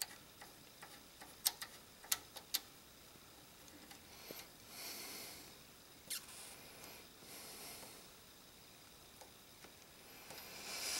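Faint scattered small clicks and soft scraping as fingers turn the thumbscrews of a DVI-to-HDMI adapter into a PC graphics card's DVI port, snugging them down. The clicks come mostly in the first three seconds, with one more about six seconds in.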